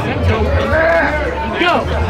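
A drawn-out, wavering shout or call from a voice in the crowd, held for about a second and dropping in pitch near the end, over crowd chatter and bass-heavy background music.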